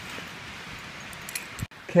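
Steady outdoor hiss with a few light metallic clinks of climbing hardware (carabiners and rappel gear on a harness) about a second and a half in, during a rope descent.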